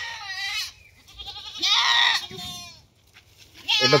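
Ganjam goats bleating twice, each call with a quavering, wobbling pitch. The first tails off early, and the second, louder one comes around the middle.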